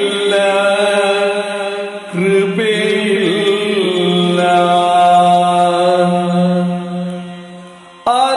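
Male voice singing in Yakshagana bhagavathike style, drawing out long held, gliding notes. There is a short break about two seconds in, then a long sustained note that fades away near the end.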